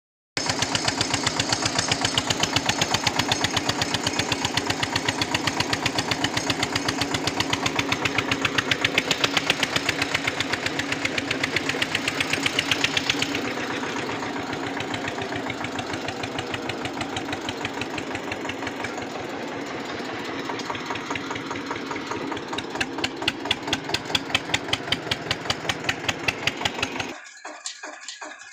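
Eicher tractor's diesel engine running while the tractor is driven, heard from the driver's seat close to the upright exhaust pipe: a loud, steady, even exhaust pulse. It eases a little about halfway through, picks up again later, and cuts off suddenly just before the end.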